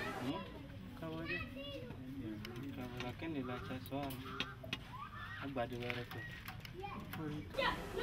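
Children's voices talking and calling in the background, quieter than the nearby narration.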